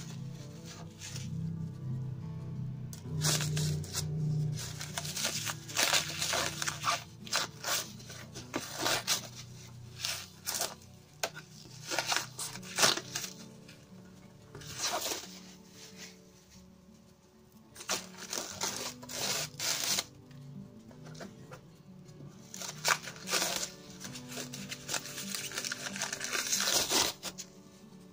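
Clear plastic wrapping film crinkling and tearing in irregular bursts as it is pulled off an acrylic hood deflector, over steady background music.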